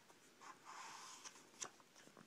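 Faint rustle of a picture book's paper page being turned, lasting under a second, then a single soft tick.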